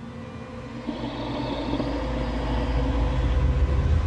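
A low rumble that swells for about three seconds, then cuts off suddenly.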